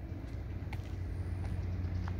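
A steady low engine hum, like a vehicle idling, with a few faint clicks.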